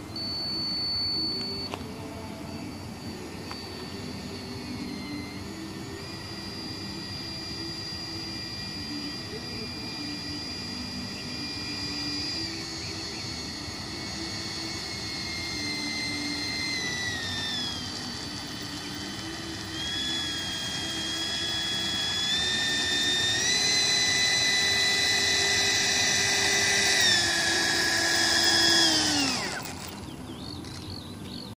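70 mm electric ducted fan of a radio-controlled MiG-15 model jet whining at taxi throttle, its pitch stepping down and up as the throttle is moved. It grows louder toward the end, then spools down quickly and stops as the throttle is cut.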